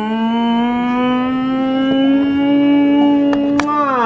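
A person's voice holding one long note for about four seconds. The pitch creeps slowly upward and then slides down as the note ends. A couple of faint clicks come near the end.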